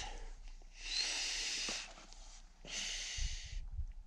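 A man breathing hard through the mouth: two long hissing breaths about two seconds apart, taken around the bite valve of a hydration-pack drinking tube, out of breath at high altitude.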